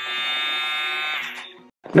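Cordless handheld milk frother running with its whisk spinning in the air: a buzzing motor whine at full speed that holds steady for about a second, then dies away and cuts off near the end.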